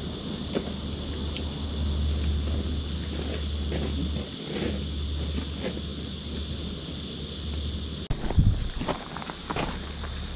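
Assembly of a Helinox cot tent on gravel: scattered light clicks and rustles as the frame's legs are fitted, over a steady low rumble of wind on the microphone. After about eight seconds the rumble drops away and a run of louder knocks and clatter follows.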